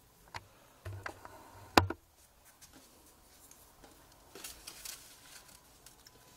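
Close handling noises: a few sharp clicks and a knock, the loudest about two seconds in, then a brief faint scratchy rustle near the end.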